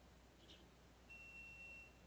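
Near silence: room tone, with a faint, thin, steady high tone for just under a second near the end.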